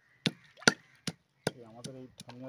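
Hands working in terracotta bowls: about five sharp clicks and knocks against the clay, the loudest just under a second in.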